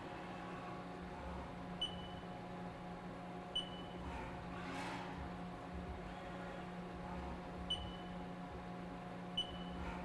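Haas TM-1p CNC mill running an automatic probing cycle: a steady machine hum with whirring axis moves. Four short, high beeps with clicks come at uneven intervals, one for each time the wireless probe's stylus touches a side of the block while it finds the block's center.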